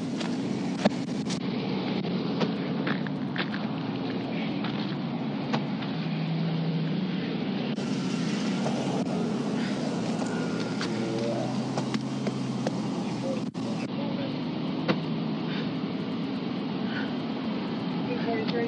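Steady low rumble of a stopped car's engine and the road, with scattered sharp clicks and faint, indistinct voices.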